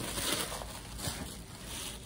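Paper packaging rustling and crinkling as it is handled.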